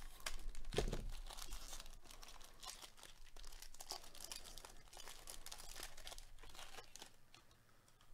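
The crinkly wrapper of a jumbo pack of baseball cards being torn open and peeled off by gloved hands. It gives a run of irregular crackles and rips, loudest about a second in and thinning out near the end.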